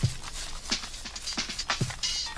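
Broken rock and dirt being shaken and scraped through a hand sieve: irregular rattling and scraping strokes, the sharpest right at the start.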